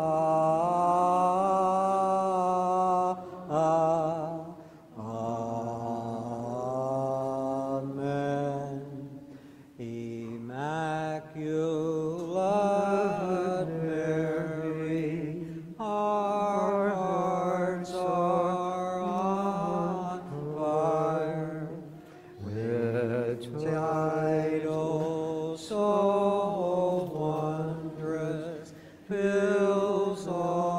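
Unaccompanied liturgical chant sung by male voices, long held notes that step up and down in pitch, with short pauses between phrases.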